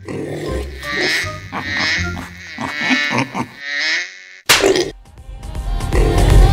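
Cartoon sound effects over light background music: a soft sound repeating about once a second, then a single sharp bang about four and a half seconds in.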